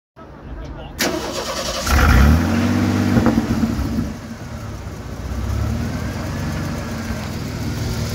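Ford 300 cubic-inch inline-six of an F-150 pickup, heard at the exhaust. It comes in suddenly about a second in, revs up sharply at about two seconds and falls back with a brief crackle on the overrun, then rises again more gently before settling.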